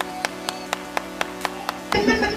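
One person clapping steadily, about four claps a second, over a sustained music chord.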